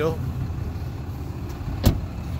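Pickup truck's front passenger door shut with one solid thump near the end, over a low steady rumble.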